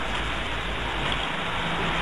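Steady hiss of background recording noise with a faint low hum underneath, from a low-quality room recording.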